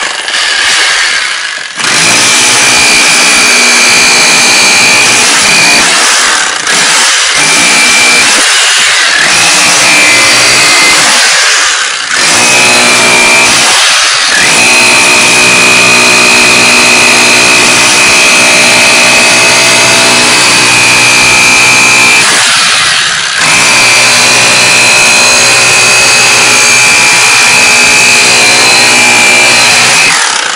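Bosch GBH 4-32 DFR 900 W rotary hammer chiselling into a concrete block with a pointed chisel bit, a loud, steady, rapid hammering with a few brief dips every few seconds.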